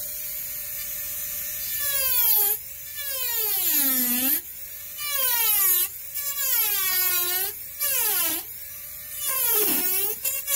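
Micromotor rotary carving handpiece with a large burr, running at full speed with a high whine. From about two seconds in, its pitch sags and recovers about six times as the burr bites into the wood, with a rasp of cutting at each dip.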